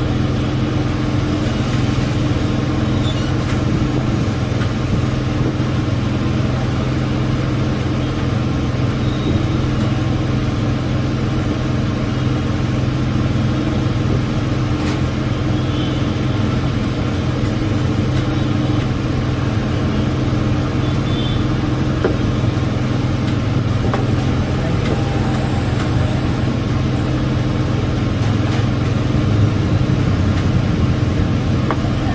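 Steady low mechanical hum that does not change, with a few faint light clinks of steel tableware.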